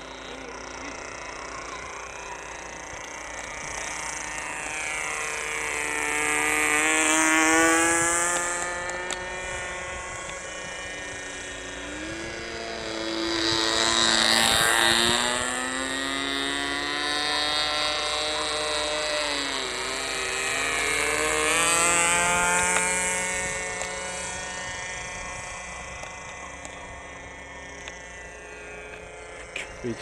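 Small .15-size nitro glow engine of a radio-controlled model airplane running at high throttle in flight, a high buzz that swells and fades as the plane makes three passes, its pitch dropping each time it goes by.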